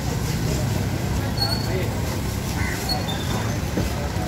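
Busy street background of steady vehicle rumble and people talking, with a heavy cleaver slicing and chopping through fish on a wooden chopping block and a few faint knocks.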